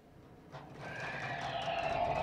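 A wavering, whinny-like film sound effect of the liquid-metal Terminator beginning to morph, swelling up about half a second in.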